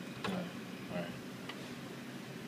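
A few short, sharp mechanical clicks from an ATM's card-reader slot as the card is handled, one just after the start and a fainter one past the middle.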